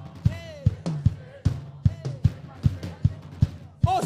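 Live worship band music: a drum kit keeps an even beat of about two and a half kick-drum strokes a second, with a brief wordless sung note near the start and a short vocal "oh" at the very end.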